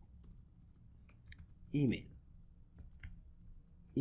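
Typing on a computer keyboard: faint key clicks in short, scattered runs.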